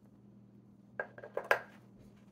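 About a second in, four or five small hard clacks in quick succession, the last loudest, with a slight ring. It is a glass ink vial and plastic fountain-pen parts knocking together as they are handled and set down on the desk.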